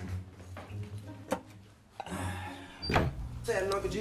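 Quiet film soundtrack of a kitchen scene: a low steady hum with a few short knocks and clicks, then a voice speaking near the end.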